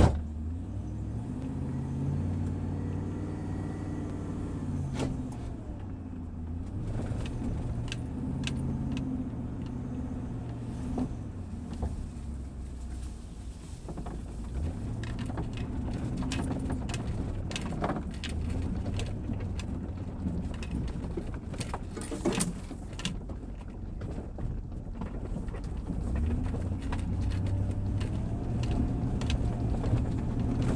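Car engine running as the car drives slowly, heard from inside the cabin; its hum rises and falls in pitch several times as the car speeds up and eases off. Scattered light clicks and rattles run over it.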